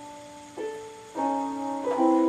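Small portable electronic keyboard playing steady electronic tones, several notes sounding together, with new notes pressed about half a second in, just after a second, and again near the end.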